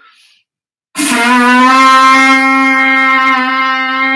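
Viking blowhorn, a hollow animal horn, blown with buzzing lips: one long, steady, brassy note that starts suddenly about a second in and is held to the end.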